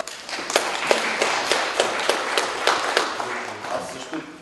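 A small audience applauding: a patter of separate hand claps that dies away near the end.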